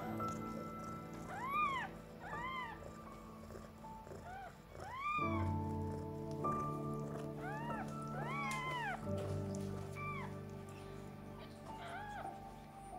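Newborn kitten mewing: about seven short, high cries, each rising and falling in pitch, over steady background music.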